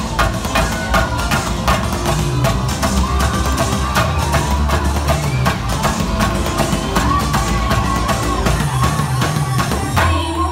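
DJ dance music with live chenda drumming: rapid stick strokes on the drums, played over the track.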